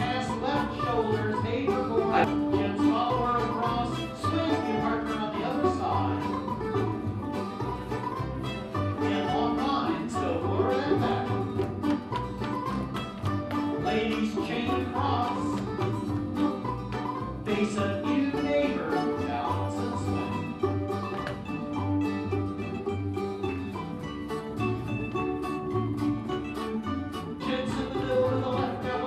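Old-time string band playing a contra dance tune on banjo, guitar and upright bass, with a steady, even bass beat under the plucked melody.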